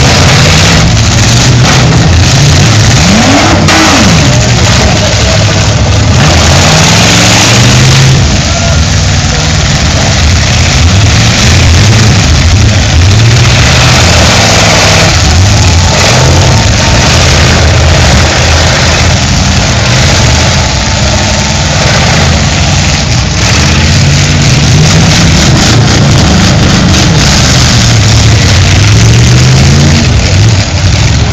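Several demolition-derby cars' engines revving hard, their pitch rising and falling again and again as the cars push against each other, with occasional bangs of cars colliding mixed in.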